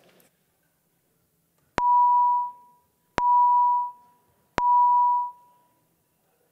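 Three identical electronic beeps of one steady mid-pitched tone, evenly spaced about a second and a half apart, each fading out after under a second. This is the chamber voting system's tone, sounded as a roll-call vote opens.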